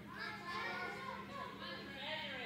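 Indistinct chatter of several overlapping voices, children among them, in a large gym hall, with a steady low hum underneath.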